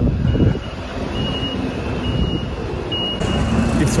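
A reversing alarm beeping four times, each beep short and high-pitched, a little under a second apart, over a steady low rumble of street traffic.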